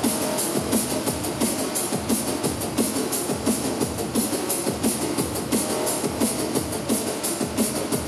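Drum and bass played loud over a club sound system: fast, busy breakbeat drums with rapid hi-hat ticks, thin in the deep bass.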